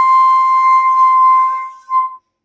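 Bamboo bansuri flute holding one long steady note, which fades out near the end and is followed by a brief short note.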